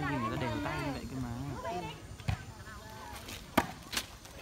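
A volleyball being struck by players' hands: sharp slaps about a second and a half apart in the second half, after a stretch of voices from the players and spectators.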